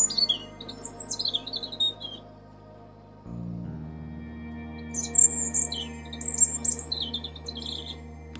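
European robin singing: two short phrases of high, thin, quickly changing warbled notes, one at the start and one from about five seconds in. Soft background music with sustained low chords runs underneath.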